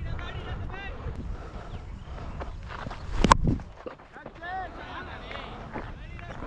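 Players' voices calling and chatting across an open cricket ground, with low wind rumble on the microphone. A single sharp knock about three seconds in is the loudest sound.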